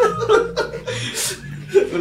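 Several people chuckling and laughing together; the laughter dies down about half a second in and a short burst of it comes back near the end.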